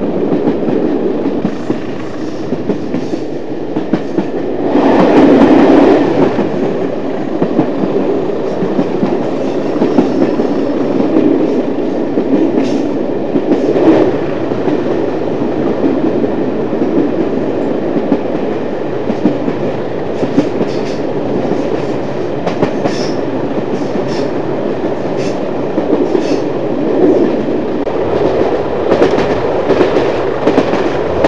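A train hauled by a pair of English Electric Class 20 diesel locomotives running, heard from an open carriage window: a steady dense rumble with wheels clicking over the rail joints. The noise is louder for a couple of seconds about five seconds in.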